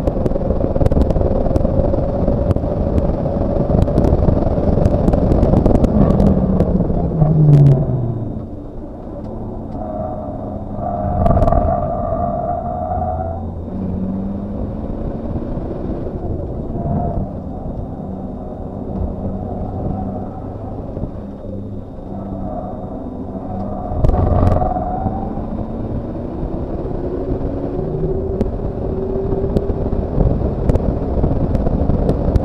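Kia Sportage QL's engine heard from inside the cabin at racing pace: running hard at high revs, then revs dropping away about seven seconds in as the driver brakes, a quieter stretch through the corners with two brief tyre squeals, and revs climbing again near the end.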